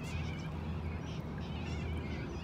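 Faint warbling bird calls, one near the start and another past halfway, over a steady low rumble of outdoor background noise.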